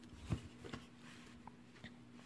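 Faint, scattered light clicks and taps of small items being handled over a low steady hum.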